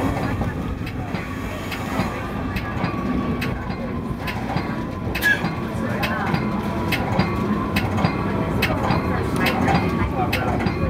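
Metra commuter train running, heard from inside the cab car: a steady rumble with sharp, irregular clicks from the wheels passing over rail joints and a grade crossing.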